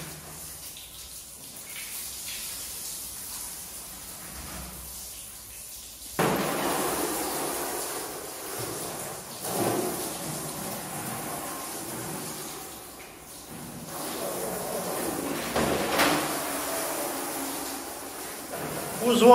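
Water running from a garden hose, a steady rush that gets suddenly louder about six seconds in. A few knocks and scrapes of plastic wall panels being handled are heard, notably around the middle and near the end.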